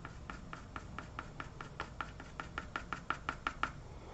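Pastel pencil making short, quick strokes on drawing paper: a regular run of light ticks, about five a second, growing louder and stopping shortly before the end.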